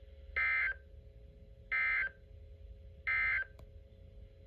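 Three short bursts of warbling SAME digital data tones from a Reecom NOAA weather alert radio's speaker, each about a third of a second long and about one and a third seconds apart: the end-of-message code that closes the Required Weekly Test broadcast. A faint steady hum runs underneath.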